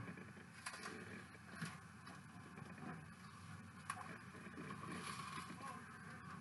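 Faint sounds of a dried peel-off gel face mask being slowly pulled away from the skin, with a few soft ticks as it comes loose.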